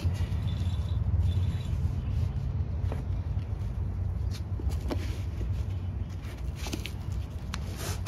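Steady low rumble of an idling engine, with a few faint ticks and rustles from hands adjusting hook-and-loop straps on a folded fire hose bundle.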